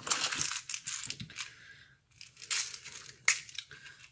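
Rustling and crinkling as things in a handbag are rummaged through, in two spells with a short lull between, and a sharp click a little after three seconds.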